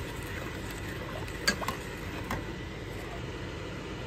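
A metal spoon stirring thick pepper sauce in a pot, with a few light clinks of the spoon against the pot, the sharpest about a second and a half in, over a steady low background hum.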